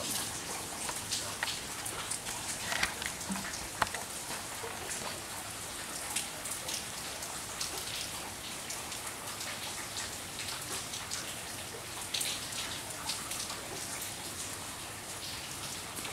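Slow, steady rain: a constant even hiss with many separate drops ticking sharply close by.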